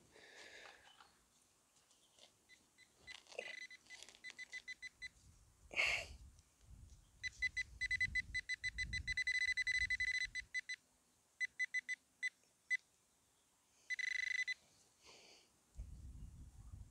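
Metal detecting pinpointer beeping at one high pitch while searching the soil for a target. It gives scattered short beeps, then quick pulses that run almost together for about three seconds, a few more beeps, and a short steady tone near the end. Low rustling of hands working loose soil sits beneath the beeps.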